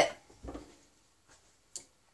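A ceramic plate knocks softly once against a wooden chopping board, about half a second in. A faint short click follows near the end.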